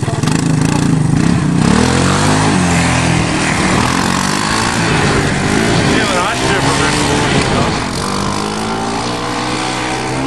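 Engine of a Honda three-wheeler revving hard under load on a steep dirt hill climb, its pitch rising and falling several times as the throttle is worked.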